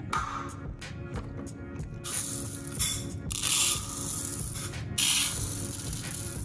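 Dry rice grains pouring and rattling into a plastic measuring cup, in two hissing bursts, about two seconds in and again at five seconds, over background music.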